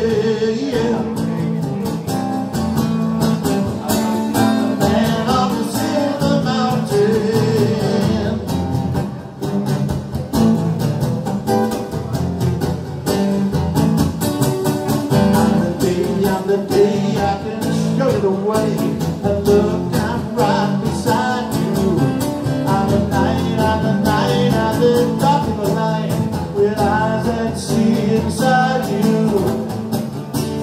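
Live rock music in a small room: an electric guitar played through an amplifier, with a man's voice singing at times.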